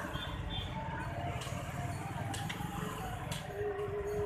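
Street background noise: traffic and distant voices, with a few sharp clicks.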